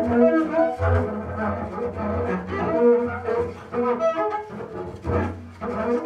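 Double bass played with a bow in free improvisation: a run of short notes that keep shifting in pitch.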